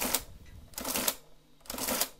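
Olivetti Multisumma 20 electro-mechanical adding machine cycling through repeated subtractions as the minus key is pressed, three times about a second apart. Each cycle is a short mechanical clatter as the mechanism runs and the printer lists the entry.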